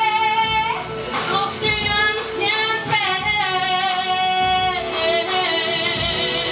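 A woman singing R&B/soul live into a microphone. She holds a long high note, breaks into quick melismatic runs about a second in, then holds another long note that steps down in pitch near the end.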